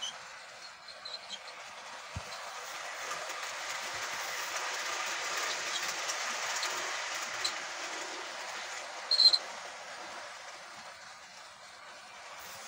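Model train running on a layout's track: a steady rolling whir with scattered clicks from the wheels and rail joints, swelling toward the middle as the train passes close. A short, loud, high-pitched squeal cuts in about nine seconds in.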